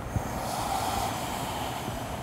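A long, steady audible exhale: a yoga breath hissing out through the throat and mouth as she folds forward into a half-split.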